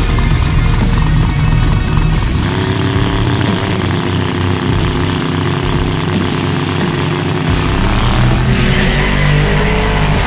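Drag cars' engines running loud at the start line, then accelerating away. The engine pitch rises near the end, and music plays over it.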